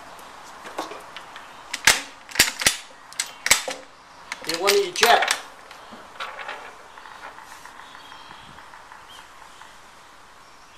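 A handful of sharp metallic clicks and clacks, about four over a second and a half starting some two seconds in, from the bolt of a Spanish Mauser 1893 bolt-action rifle being worked.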